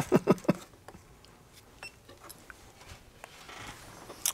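A few short clacks in the first half second as a plastic handheld component tester is picked up and moved across a wooden bench, then a quiet stretch with a few faint ticks.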